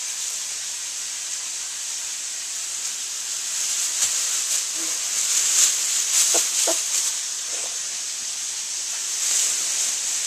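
Steady sizzle of steaks frying in a pan, with a clear plastic bag crinkling and rustling as a kitten scrambles inside it, loudest around the middle and again near the end.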